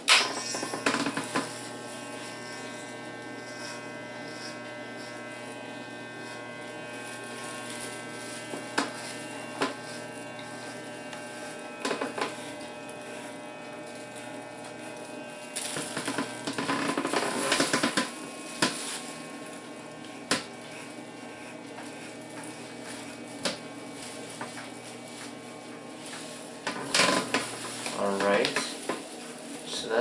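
Electric hair clipper fitted with a number one and a half guard, running with a steady buzzing hum as it cuts a toddler's short hair. It goes louder and rougher for a couple of seconds about halfway through. Scattered light taps and clicks come from the clipper being handled.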